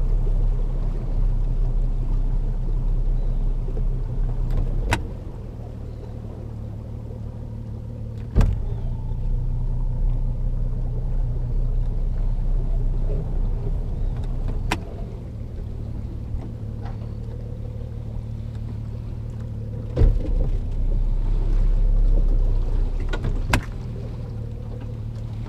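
A boat's outboard motor running slowly with a steady low rumble that steps louder and quieter several times. Five sharp clunks come with those changes.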